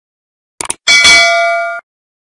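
Subscribe-button animation sound effect: a quick pair of mouse clicks, then a bright bell ding that rings for under a second and cuts off abruptly.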